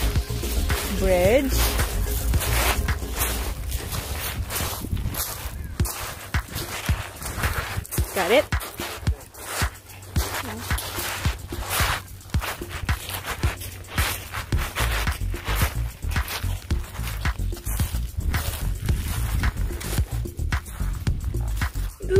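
Background music over footsteps crunching on a pebble beach, with a voice speaking briefly about eight seconds in.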